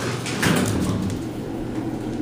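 Montgomery elevator doors sliding shut with a thump about half a second in, followed by a low rumble as the car starts to move.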